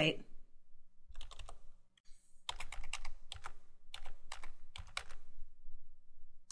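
Computer keyboard typing a web address: a few keystrokes about a second in, then a steady run of keystrokes until near the end.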